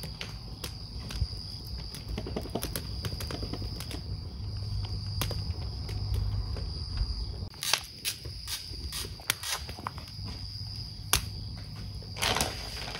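Wood fire crackling, with irregular sharp pops scattered through it, the loudest coming in the second half, over a low steady rumble and a faint steady high tone.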